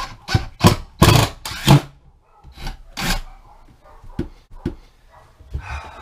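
Short scraping and rubbing handling noises from work on a wooden shelf and its brackets. A quick run of scrapes comes over the first two seconds, then a couple more, then fainter scattered ones.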